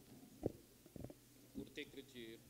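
People getting to their feet in a quiet church hall: a few soft knocks and thumps, with a brief faint voice near the end.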